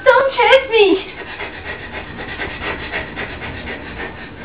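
A person's high, wavering voice for about the first second, without words, then quieter ragged, breathy noise.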